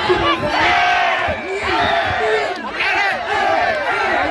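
Crowd of Muay Thai spectators shouting and yelling together, many voices overlapping, reacting to an exchange of kicks in the ring.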